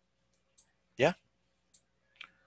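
Two faint computer mouse clicks, a little over a second apart, as a shape is placed in a spreadsheet.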